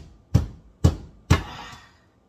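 Large kitchen knife chopping down through raw sweet potato onto a plastic cutting board: three heavy chops about half a second apart, the last one followed by a short rasp as the blade goes through.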